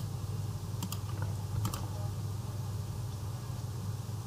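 A few faint, scattered clicks from a computer keyboard and mouse being worked, over a steady low hum.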